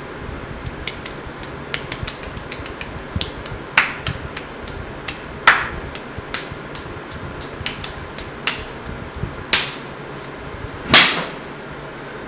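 Irregular sharp clicks and taps, with four louder cracks that ring on briefly; the last, near the end, is the loudest.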